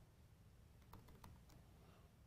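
A few faint keystrokes on a laptop keyboard over near silence, the clicks coming about a second in and again shortly after.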